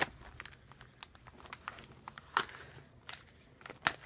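Clear plastic binder sleeves crinkling, with a few scattered clicks and rustles, as photocards are worked into their pockets.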